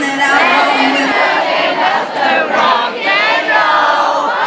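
A concert crowd singing and shouting along together, many voices at once. A single held sung note ends about a second in.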